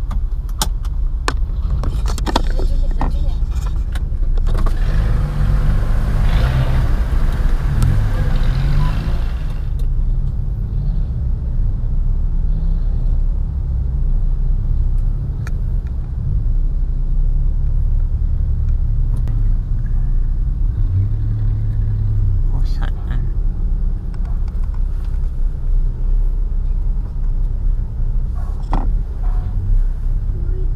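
Steady low engine and road rumble heard from inside a car cabin as the car moves off a ferry deck. A rushing noise rises for several seconds near the start, with a few light clicks early on.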